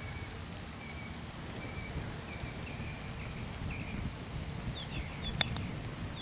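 A single sharp click about five seconds in as a putter strikes a golf ball. Behind it is a steady low outdoor background with faint bird chirps on and off.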